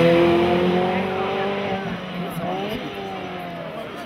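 Ferrari F430's V8 engine at high revs as the race car passes and pulls away uphill. It is loudest at the start and fades, with the pitch wavering up and down around the middle.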